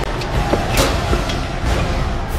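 Cinematic sound design: a steady heavy low rumble with a few brief swishing sweeps, over dramatic music.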